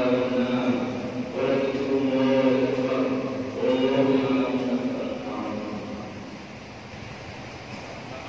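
A man leading religious chanting over a microphone and loudspeaker, in long drawn-out phrases, growing quieter in the last couple of seconds.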